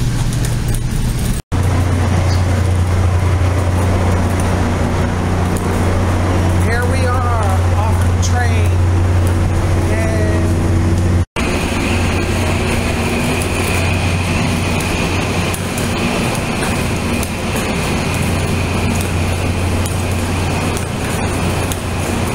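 Commuter-train diesel locomotive idling at a station platform, a loud steady low hum, with a steady high whine joining after about eleven seconds.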